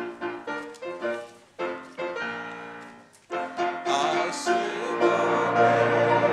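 Grand piano playing a hymn introduction in separate, ringing notes; after a brief pause a little past three seconds in, voices singing the hymn come in with the piano and a violin, growing louder.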